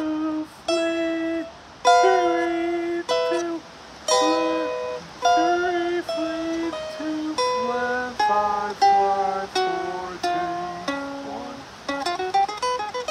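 Godin electric-acoustic guitar played clean, picking single notes and short arpeggio phrases, each note ringing out and fading before the next. There is a slide or bend near the end. This is jazz dominant-seventh arpeggio practice.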